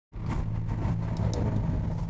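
Car interior noise while driving: a steady low engine and road hum heard inside the cabin, starting abruptly at the very beginning, with a few faint ticks.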